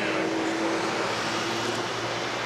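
Steady traffic noise with a motor vehicle passing; its engine hum holds steady for about a second and a half, then fades into the general rush.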